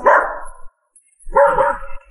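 A dog barking twice, the second bark about a second after the first.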